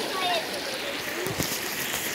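River water running with a steady rush, with faint distant voices over it and a short knock about one and a half seconds in.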